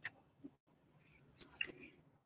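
Near silence, with a faint, brief breathy voice sound, like a whisper, about one and a half seconds in.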